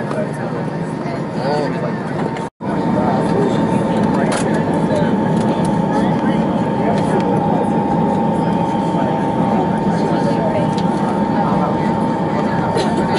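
Airliner cabin noise while taxiing on the ground, the jet engines running at low power under a murmur of passengers' voices. The sound breaks off for an instant about two and a half seconds in, then comes back slightly louder with a steady thin whine running through it.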